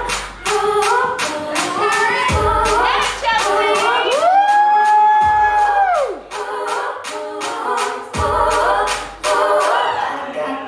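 Dance song with a sung lead vocal over a steady beat. About four seconds in, the singer holds one long high note for about two seconds, then it falls away.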